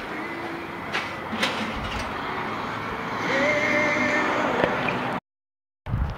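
Rustling and handling noise with a couple of light knocks, then a drawn-out creak from the 1961 Ford Ranchero's door opening, about three seconds in. The sound cuts out suddenly near the end.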